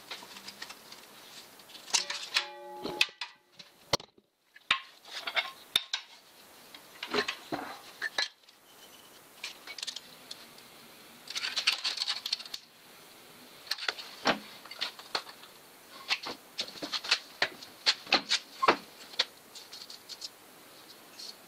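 A thin sheet-zinc strip being handled and flexed against metal: irregular light metallic clinks, taps and rattles, with a brief ringing tone about two seconds in and a short stretch of scraping around the middle.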